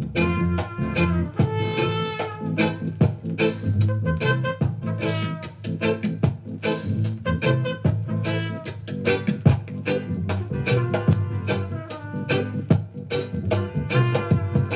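Roots reggae instrumental played from a 7-inch 45 rpm vinyl single: a trumpet-led horn melody over a heavy bass line and a steady drum beat.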